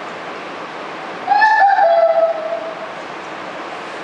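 A person blowing their nose hard into a handkerchief, giving one loud honk of about a second and a half that starts a little over a second in and drops slightly in pitch partway through.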